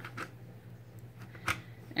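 Plastic embroidery hoop insert being set into its oval hoop, with a faint click and then one sharper plastic click about one and a half seconds in.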